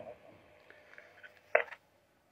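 A quiet pause with faint hiss, then a short burst of sound from a handheld two-way radio's speaker about one and a half seconds in.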